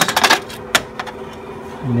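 A quick run of sharp clicks, then a single click a moment later and a few fainter ones, over a faint steady hum.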